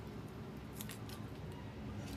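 Florist's scissors snipping a leafy green stem: a few quick, sharp snips near the middle.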